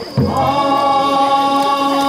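Shinto kagura music: a single drum stroke a moment in, then a held melody line that slides up into its note and sustains.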